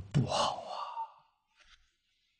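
An elderly man's breathy exhale, like a soft sigh, lasting about a second right after a spoken phrase ends, then quiet.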